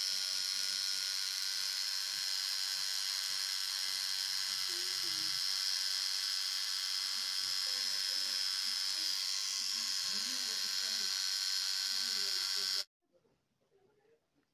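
Electric tattoo machine buzzing steadily as it needles the skin, cutting off suddenly about a second before the end.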